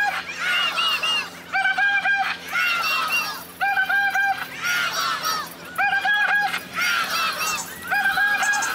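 Protest crowd chanting in a steady cycle about every two seconds. Each round is answered by four short honks, each held on one even pitch.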